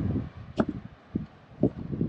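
A few short, dull knocks and bumps, about one every half second, from someone moving about close to the microphone.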